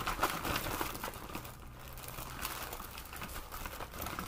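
Crinkling and rustling of packaging handled by hand while items are rummaged through, a series of irregular rustles that are busiest in the first second.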